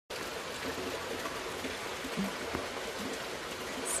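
Steady rain falling, an even hiss of drops.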